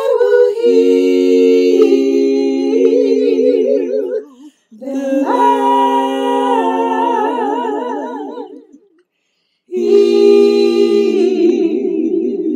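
A woman's singing voice, multi-tracked into layered a cappella harmony: several parts hold long wordless notes with vibrato in three phrases, each broken off by a short pause.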